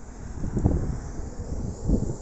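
Wind buffeting the microphone: an uneven low rumble that swells about half a second in and again near the end.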